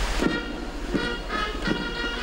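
A brass band starts playing about a quarter of a second in. Its held, horn-like notes change several times a second, and the steady rush of fountain water cuts off as it begins.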